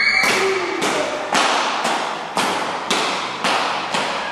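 Feet stamping in unison on a hard hall floor, a regular beat of about two thumps a second with room echo after each.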